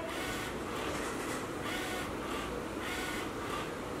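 Steady, faint background noise in a kitchen, with no distinct event standing out.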